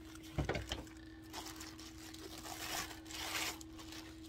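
Faint rustling of packaging as a wax warmer is lifted out of its box, with a soft knock about half a second in.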